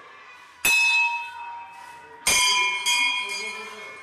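Temple bell struck three times, the first strike alone, then two close together about a second and a half later, each ringing out and fading slowly.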